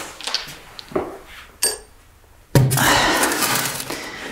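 Metal stock pot knocking a few times as it is lifted, then about two and a half seconds in a sudden rush of dye liquid pouring and splashing, which tails off.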